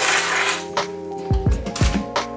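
A bunch of metal keys jingles as it is snatched up off a tabletop, loudest in the first half-second, with a few more clinks after. Background music with a steady beat plays under it.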